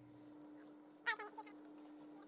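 A dog giving a short, high-pitched whine about a second in, over a faint steady hum.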